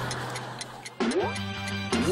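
Clock ticking sound effect marking a running timer. About a second in, a rising swoop brings in background music with held tones.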